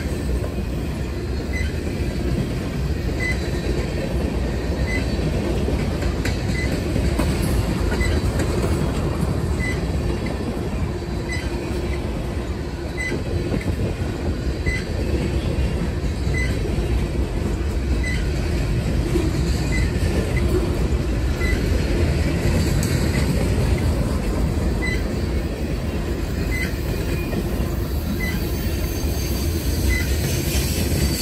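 Freight train of boxcars rolling steadily past at close range, its wheels running on the rail in a continuous rumble. A faint high ping recurs about every second and a half.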